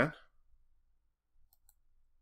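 Two faint computer mouse clicks in quick succession about a second and a half in, selecting the Line command; the end of a spoken word at the very start.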